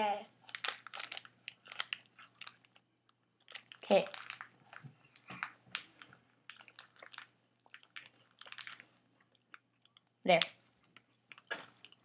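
Someone chewing a cracker, with many small, irregular crunches and crackles between a few short words.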